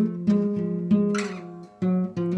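Acoustic guitar strummed slowly. A few chords are struck and each is left to ring.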